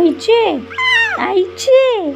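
A baby making short wailing cries, about four in a row, each one rising and then falling in pitch.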